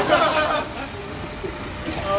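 Men shouting and whooping over a steady rumble of street traffic, the voices loudest in the first half-second and again near the end.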